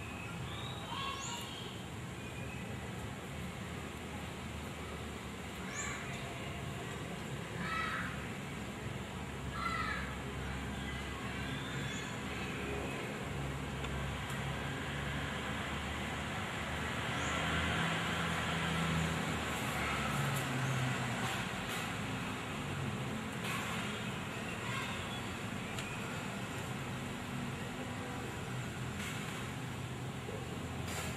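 Outdoor background: a steady low rumble like distant traffic, with short chirping calls every few seconds in the first half.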